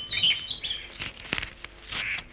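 A few short, high bird chirps, followed by two light knocks a little after a second in.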